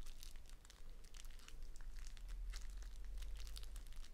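Plastic packaging around a four-pack of white erasers crinkling in irregular crackles as fingers handle and turn it.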